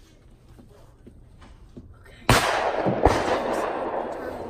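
A shotgun fires once about two seconds in: a sudden loud crack with a long echo that dies away over the next second and a half, and a second, smaller sharp crack inside the echo.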